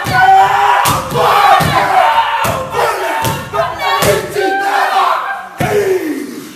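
Māori haka: a group of men shouting and chanting in unison, with sharp hand slaps and foot stamps keeping the beat, about one a second.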